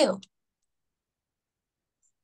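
A woman's voice finishes the word "two", then dead silence.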